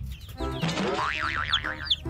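A cartoon boing sound effect: a pitch that sweeps up about half a second in, then wobbles quickly up and down, over cheerful background music with a steady beat.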